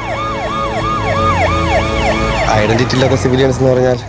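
A siren wailing in fast repeated sweeps, about three a second, each jumping up and sliding down, over a low droning film score; it stops about two and a half seconds in, as a man's voice begins.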